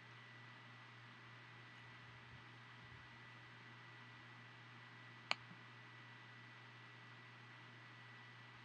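Near silence: faint room tone with a steady hiss and low hum, broken once by a single sharp click about five seconds in.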